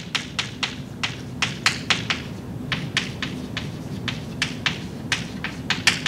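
Chalk writing on a blackboard: a quick, irregular run of sharp taps and clicks as the chalk strikes the board with each stroke.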